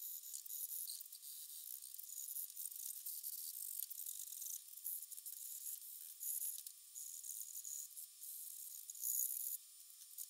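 Sandpaper and a sanding sponge rubbed by hand over a cherry saw handle. The sound is a thin, hissy scratching in short, uneven strokes.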